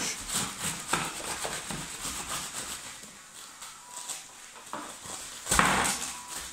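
Plastic sheeting crinkling and rustling as hands press down and a rolling pin rolls over a plastic-covered tray of crumb mixture, with a louder rustle near the end.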